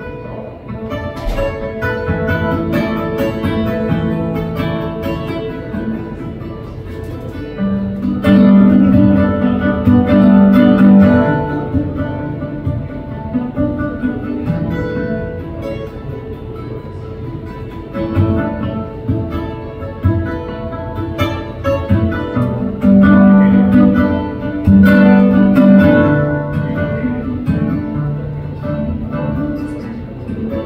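Solo acoustic guitar played live, an instrumental passage of picked notes and chords without voice. It swells louder twice, with heavy low notes about a third of the way in and again about three-quarters through.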